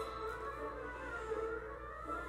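Faint classical instrumental music with short held notes.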